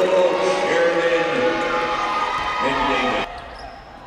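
Volleyball players shouting and cheering as they celebrate a point, over arena crowd noise; the sound cuts off abruptly about three seconds in, leaving quieter gym ambience.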